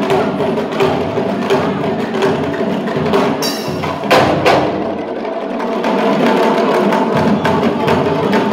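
A group of Senegalese sabar drums played together in a fast, dense rhythm of stick and hand strikes, with one louder accent hit about halfway through.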